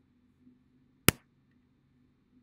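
A single sharp, loud click about halfway through, a computer click as a link on screen is selected, against near-silent room tone.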